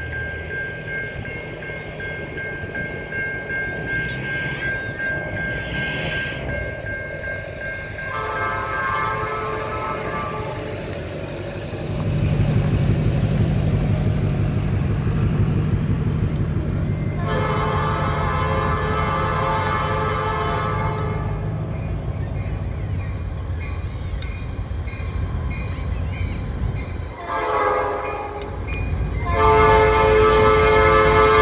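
A freight train's diesel locomotive sounding its air horn for grade crossings: blasts about eight seconds in, again for several seconds from about seventeen seconds, and a short then a long blast near the end. A grade-crossing bell rings steadily at first, and from about twelve seconds the locomotive's engine and the train's wheels rumble loudly.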